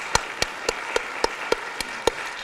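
Audience applause, with one person's sharp, evenly spaced hand claps close to a lectern microphone standing out over it, about three or four claps a second.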